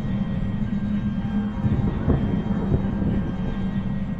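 Dark, eerie ambient music: a steady low drone with a low rumble swelling up around the middle.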